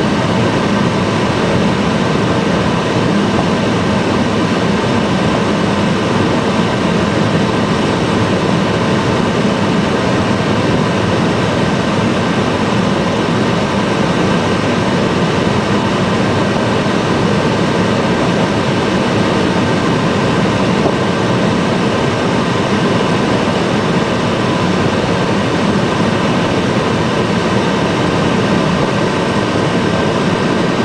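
Steady flight-deck noise of a Boeing 757-200ER on final approach: a loud, even rush of air and engine sound with a thin high whine running through it.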